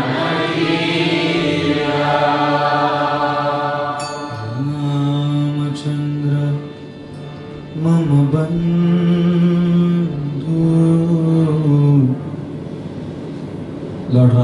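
Kirtan: a man chanting a mantra in long held notes to his own harmonium accompaniment. The voice moves to a new pitch every few seconds and drops out near the end, leaving the quieter accompaniment.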